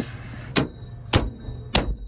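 Three blows from a steel-faced dead blow hammer on a trailer's steel leaf spring and shackle, a little over half a second apart, each sharp with a brief ring. They are meant to jar the spring and shackle so a bolt hole that won't line up moves into place.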